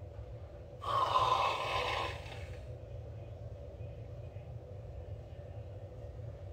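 Aerosol can of Whipshots vodka-infused whipped cream sprayed straight into the mouth: one hiss of about two seconds, starting about a second in.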